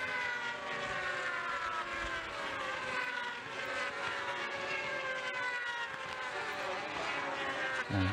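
Several 600cc supersport racing motorcycles at high revs. Their overlapping engine notes fall slowly in pitch as they pass and draw away.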